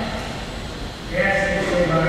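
A person's voice starts about a second in, holding a steady note.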